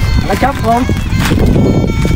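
Wind buffeting the microphone, a dense low rumble that runs under a man's brief speech, with faint steady high-pitched tones above it.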